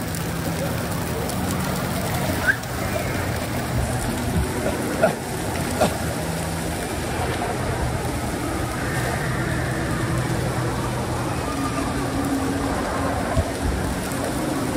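Steady wash of running water and water-park din with indistinct voices, broken by a few sharp knocks of the phone being handled.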